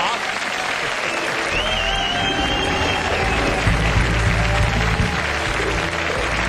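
Studio audience applauding, with the show's band starting to play music about a second and a half in, a bass line underneath and a wavering high melody over it.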